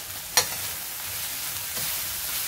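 Butter and beef strips sizzling in a smoking-hot frying pan, a steady hiss that builds slightly as the knob of butter melts and is stirred with a metal spoon. A single sharp click comes just under half a second in.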